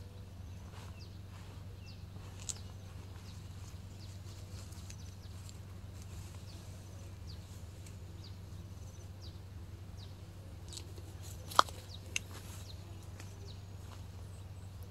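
Outdoor ambience with many faint, short, high chirps of small birds scattered throughout, over a steady low hum. Two sharp clicks come near the end, about half a second apart.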